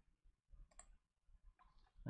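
Near silence, with a couple of faint computer mouse clicks a little over half a second in.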